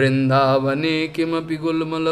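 A man's voice chanting melodically, holding notes with a wavering pitch and moving from note to note in short phrases.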